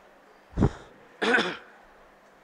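Throat clearing in two goes: a short one about half a second in, then a longer one a little after a second in.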